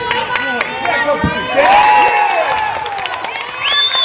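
Spectators and players shouting and cheering in a gym during a basketball game, many voices overlapping. A thump comes about a second in, and a short high squeak near the end.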